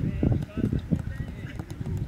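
A run of quick low thuds from footballs being kicked and players' boots on the grass during a passing drill, with voices calling in the background.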